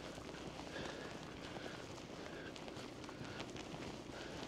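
Faint footsteps of people walking on a tarmac lane, over quiet outdoor background noise.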